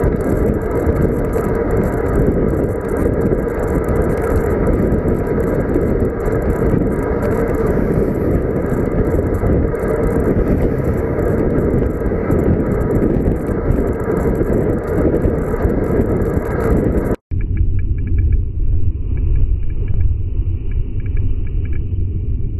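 Steady wind and road noise on a bike-mounted action camera's microphone while riding in a group. About 17 seconds in the sound cuts out for an instant and comes back duller, a low rumble with the high end gone.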